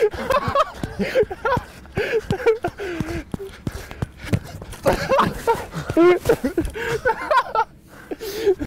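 Young men laughing and calling out excitedly, with no clear words, and a football kicked about four seconds in.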